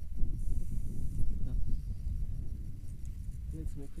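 Wind buffeting an action camera's microphone: a dense, uneven rumbling noise, with a few spoken words near the end.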